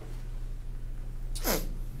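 A person's single short, sharp burst of breath through the nose, like a sneeze or snort, about one and a half seconds in, over a steady low electrical hum.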